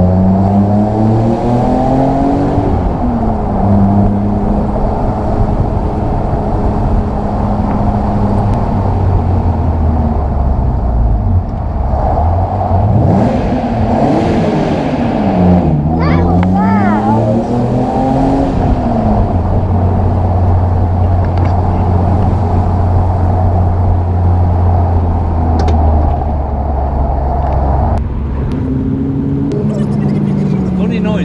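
BMW M Roadster's straight-six engine pulling through the gears: the pitch climbs, drops at a gear change about three seconds in, and holds steady. In the middle it falls and rises twice as the car slows and picks up again, then runs evenly at a steady cruise.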